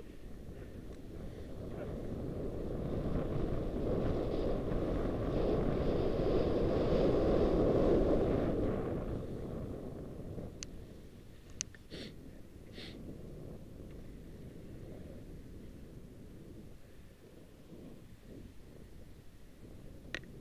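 Wind rushing over a helmet-mounted camera's microphone, with the hiss of skis on snow, as a skier gathers speed downhill. It swells over the first eight seconds and dies away by about ten seconds, followed by a few short clicks.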